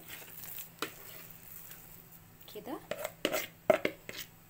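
Thick basbousa batter being emptied from a bowl into a greased round metal baking pan: soft scraping and a click, then a few sharp knocks near the end as the dense mixture drops in and the bowl meets the pan.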